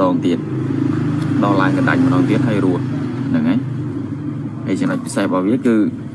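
A person's voice talking in short phrases over a steady low hum.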